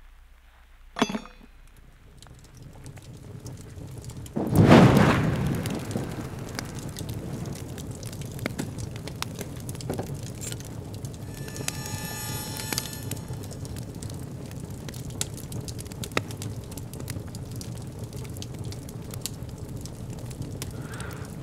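A sharp knock about a second in, then a deep whoosh about five seconds in, followed by steady fire crackling over a low rumble. A brief ringing tone sounds a little past the middle.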